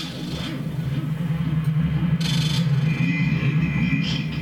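Experimental noise from a looping and feedback rig of effects pedals: a steady low drone, with a bright burst of hissing noise about two seconds in and another starting at the very end.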